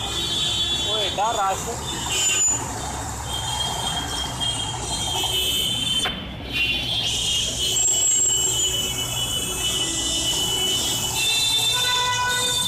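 Dense motorcycle and scooter traffic at close range: many engines running together, with high-pitched horn beeps coming and going over the din.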